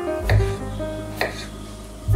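Kitchen knife cutting peeled raw potatoes into cubes on a wooden chopping board: a couple of sharp knocks of the blade hitting the board, over soft background music.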